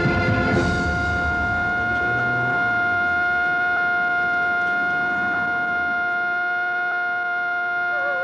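A single long, steady horn-like tone held at one pitch, over a low rumble that dies away during the first few seconds.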